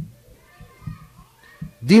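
Faint background voices of children in a room, with a single click at the start; about two seconds in, a man's voice starts loud and close to the microphone, reading in a singsong.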